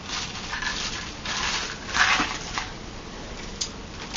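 Clear plastic bag crinkling and rustling as it is handled, in irregular bursts, loudest about two seconds in.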